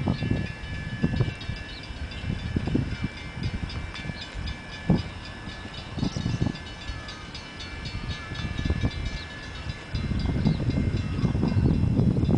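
Union Pacific diesel locomotives heading an empty coal train, approaching from a distance: an uneven low rumble that grows louder about ten seconds in. A faint steady high-pitched ringing runs underneath.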